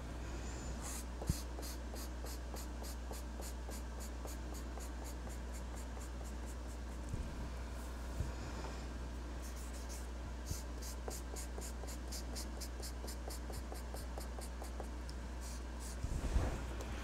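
Ohuhu alcohol marker stroking back and forth across a coloring page, a quick even scratching of about three to four strokes a second. It comes in two runs with a short break near the middle.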